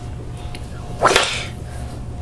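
A single short, sudden hissing burst about a second in, fading within half a second, over a steady low electrical hum.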